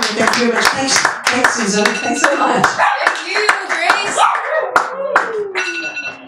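A small audience clapping, with voices talking and calling out over it in a small room. The clapping is dense at first, thins out and dies away near the end.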